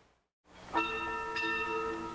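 Symphony orchestra: a brief moment of silence, then a sustained chord of several held notes enters just under a second in, with a higher note added partway through.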